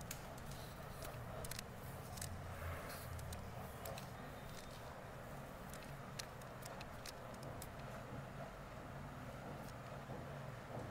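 Light, irregular clicks and snips from hairdressing tools working in wet hair, over a steady low room hum.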